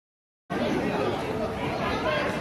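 Dead silence for about half a second, then people chattering in a busy indoor hall, several voices at once, none of them clear.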